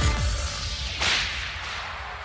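The tail of a music jingle fades out, and about a second in a sharp whip-crack sound effect hits and dies away over the following second.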